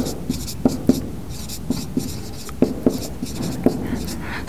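Handwriting on a board: a run of short, irregular pen strokes and taps.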